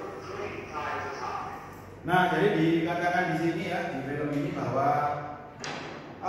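A narrator's voice from an instructional video played on the classroom projector's speakers, with an abrupt jump in loudness about two seconds in.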